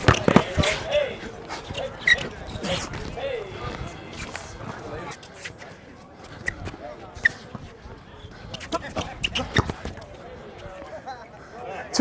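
A basketball being dribbled on an outdoor court during a one-on-one game: scattered sharp bounces, in clusters near the start, around four seconds in and around nine seconds in, with the voices of onlookers talking.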